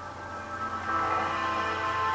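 Soft background music of sustained, held notes. New notes come in about a second in, and it grows a little louder.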